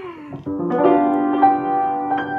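Piano chords played as the introduction to a song, starting about half a second in and ringing on, with a fresh chord struck partway through. A short falling vocal sound comes just before them.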